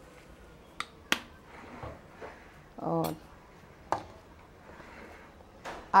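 Three sharp metal clicks of utensils against a cooking pan, the two loudest about a second in and another near four seconds, as vinegar goes into frying chicken cubes.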